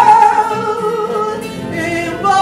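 Female fado voice holding a long, wavering sung note over Portuguese guitar and classical guitar (viola de fado). The note fades in the first part, and the guitars carry on more quietly.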